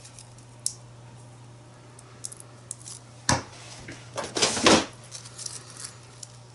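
Paper craft embellishment being handled and pressed onto a journal page: a few faint clicks, a sharp tap a little past three seconds, and a short paper rustle about four and a half seconds in, over a low steady hum.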